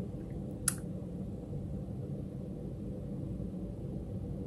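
Quiet indoor room tone with a low, steady hum, broken by one short, sharp click a little under a second in.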